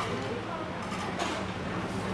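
Background chatter of other people talking, faint and indistinct, over a steady low hum.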